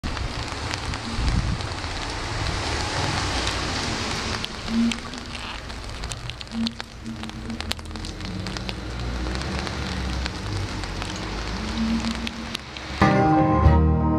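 Crackling live-venue noise with scattered clicks, loudest over the first four seconds, and a few faint low notes. Near the end the band's music starts abruptly with clear pitched notes.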